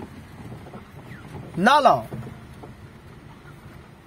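Steady low rumble of a car's engine and tyres heard from inside the cabin while driving slowly on a rough dirt track. A short voiced exclamation rises and falls about halfway through.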